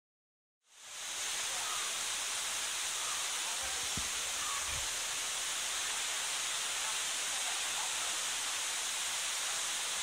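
Steady rush of a waterfall pouring down over granite rocks into a pool, fading in over the first second, with faint distant voices.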